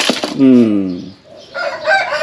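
A rooster crowing, starting about one and a half seconds in, after a man's short spoken 'hmm'.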